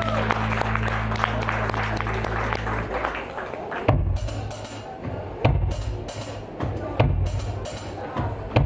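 Live rock band starting a song. For about three seconds a low note is held under audience clapping. It stops, then the drum kit comes in with a slow beat: a bass drum hit about every one and a half seconds, with light cymbal ticks between.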